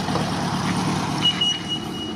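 Vehicle engine idling, a steady noisy rumble, with a thin high steady tone joining for about the last second.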